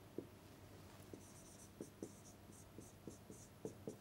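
Faint taps and a run of short scratchy strokes: a stylus tapping on and writing across an interactive display screen.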